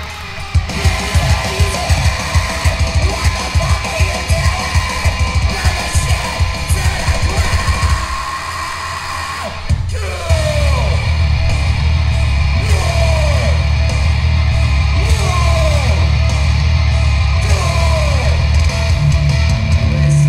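Hardcore punk band playing live. The song opens with a fast, pounding drum beat and guitar, drops back briefly, then the full band comes in louder about ten seconds in, with shouted vocals over it.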